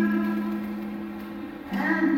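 Two women singing with ukulele accompaniment, holding a long chord that changes to a new one near the end.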